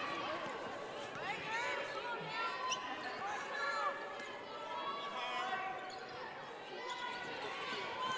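Basketball being dribbled on a hardwood court, with many short sneaker squeaks as players cut and shuffle, and faint voices in the large hall.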